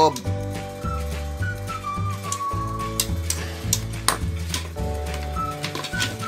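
Background music: a slow melody over held chords and a bass line that steps every half second or so, with a few sharp clicks near the middle.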